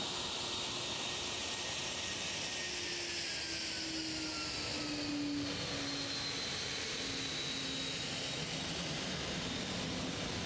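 WhiteKnightTwo carrier aircraft's turbofan jet engines running as it taxis past, a steady jet noise with whining tones that slowly fall in pitch.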